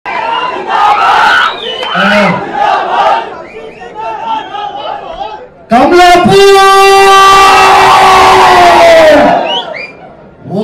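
Crowd shouting for the first few seconds, then a man's single long drawn-out shout into a microphone over the loudspeakers, held on one pitch for about three and a half seconds before it sinks and fades. This is the kind of slogan cry a speaker leads at a rally.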